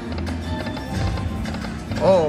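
Video slot machine reel-spin sounds: a rhythmic, music-like spin loop with patter as the reels of the Autumn Moon game spin and land.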